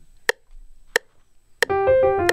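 Metronome clicking at 90 beats per minute: two clicks alone, then on the third click a piano starts a quick E-flat major run, the clicks continuing under it.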